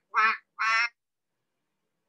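A woman imitating a duck, quacking twice about half a second apart.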